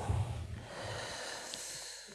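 A person breathing audibly close to the microphone, a noisy breath between stretches of speech.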